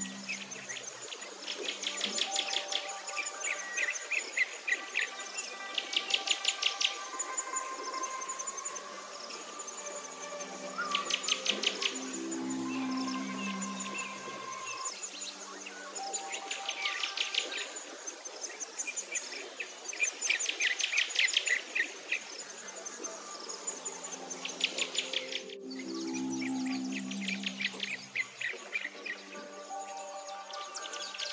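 Soft background music of slow held notes, layered with a nature-sound bed of fast high chirping trills that recur every few seconds.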